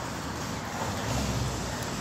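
Steady city street background noise with a low rumble that swells about a second in.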